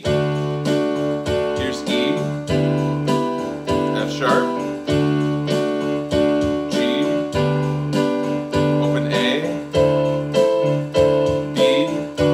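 Electronic keyboard playing a D scale slowly upward, each note struck four times in even quarter notes about 0.6 s apart, stepping to the next note after every fourth strike.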